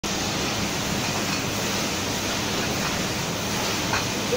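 Automatic piston filling line for glass bottles running: a steady noisy machine hum with a low drone, and a light click near the end.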